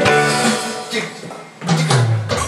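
A live band of acoustic guitar, electric guitar, keyboard and drums playing. A held chord fades out over the first second and a half, then low notes and strummed guitar chords come back in near the end.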